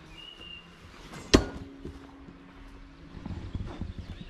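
A large steel throwing star (shuriken) hits and sticks in a wooden log target with one sharp thunk about a second in. The struck blade then gives a steady low ring that lasts about two seconds.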